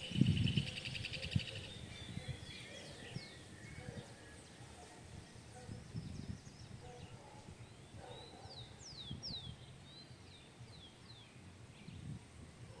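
Small birds calling outdoors: a rapid high trill that fades out in the first couple of seconds, then scattered short, high chirps that slide downward in pitch, thickest near the end. A low bump comes at the very start.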